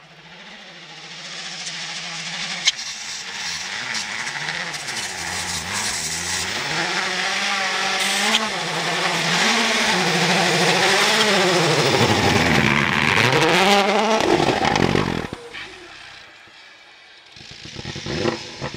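Citroën C3 WRC rally car's turbocharged 1.6-litre four-cylinder engine coming closer, revving up and down repeatedly through the gears and growing louder. It is loudest as the car slides past close by, then drops away sharply about fifteen seconds in.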